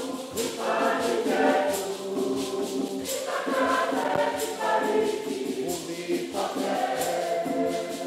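Church choir singing a hymn in Swahili, with hand percussion keeping a steady beat.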